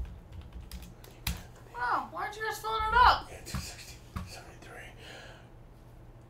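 A few scattered sharp clicks and taps, and a short voice-like phrase for about a second near the middle.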